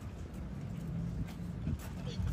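Quiet outdoor ambience: a steady low rumble with a few faint ticks.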